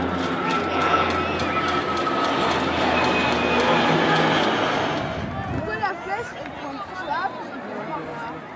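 Distant, unintelligible voices of players and spectators calling out across an outdoor soccer field, over a steady low hum. The hum stops about four seconds in, and the overall sound drops a little about five seconds in.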